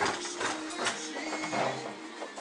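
Voices chanting a prayer on long held notes, with a few sharp clicks, the loudest right at the start.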